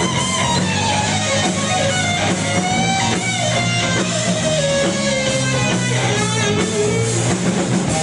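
Live rock band playing an instrumental break led by an electric guitar solo: a lead line with bent, gliding notes over the band's steady low end.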